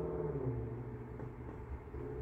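A steady low machine hum with an even drone.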